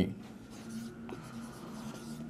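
Felt-tip marker writing on a whiteboard, a faint scratching of the tip across the board.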